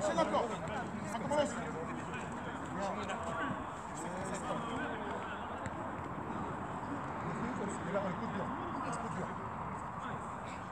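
Indistinct far-off voices over steady outdoor background noise, with a few faint knocks.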